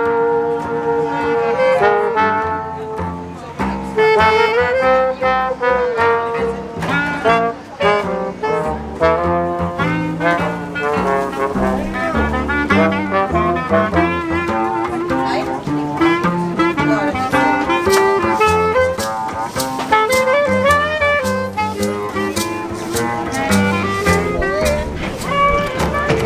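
Traditional jazz band playing: trumpet, saxophone and clarinet over a double bass, with melodic lines that slide in pitch now and then.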